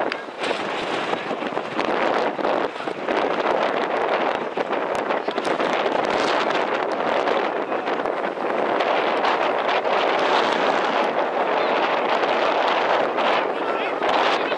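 Wind rushing over the camera microphone, a steady noise, with faint shouted voices mixed in.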